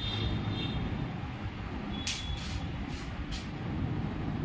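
A steady low rumble, with four or five short high hisses about halfway through.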